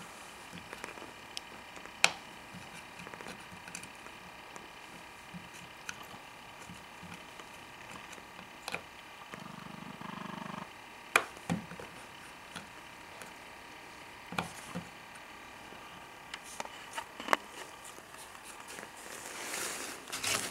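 Quiet, scattered light taps and clicks of a small child's hand fumbling at a wall toggle light switch and its plate, about one every few seconds. A short low hum comes in just before the middle.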